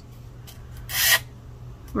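One short rasping scrape about a second in: an old nail file rubbed against the edge of a new metal nail file with a 240-grit pad, seasoning it to soften its sharp edges.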